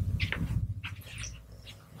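Soft, irregular footsteps of someone pacing back and forth, a step every few tenths of a second, fading toward the end, over a low steady hum.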